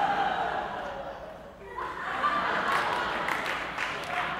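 Theatre audience laughing. A voice trails off in the first second or so, then laughter swells about two seconds in.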